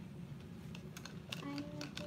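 Paintbrushes clattering against each other and the sides of a plastic cup as someone rummages through them: a quick, irregular run of light clicks starting a little over a second in, over a steady low hum.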